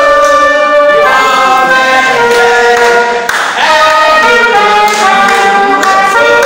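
A trumpet plays a melody of held notes, with a group singing and clapping along.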